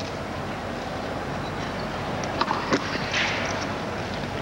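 Tennis ball struck on a grass court: two sharp pops a fraction of a second apart, about two and a half seconds in, over a steady hiss of crowd and tape noise.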